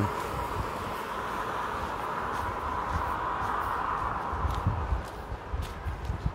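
Steady hiss of wet-street traffic noise that fades about five seconds in, with a few soft, low footstep thumps near the end.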